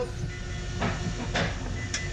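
Steady machinery hum with a faint constant tone, broken by two short hissing knocks, as the rescue RIB is readied for lowering from its davit.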